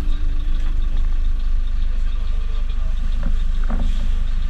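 Bus driving on a wet road: a steady low rumble of engine and tyres, with a brief voice-like sound about three seconds in.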